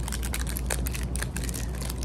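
Foil ice cream bar wrapper crinkling in the hands, a quick run of small crackles, over a steady low hum.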